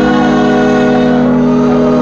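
Live gospel music: a long, steady chord held on the organ.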